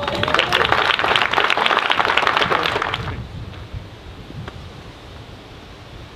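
Audience clapping, which cuts off suddenly about three seconds in and leaves only faint outdoor background.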